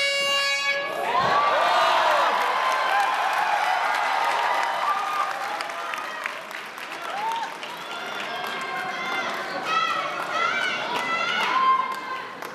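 MMA arena crowd shouting and cheering, many voices calling out over one another, loudest in the first few seconds and swelling again near the end. A brief steady horn-like tone sounds right at the start.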